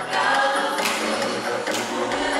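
A group of voices singing a cappella together in harmony.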